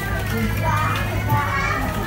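Children's voices in the background, high-pitched calls and chatter, over a steady low rumble.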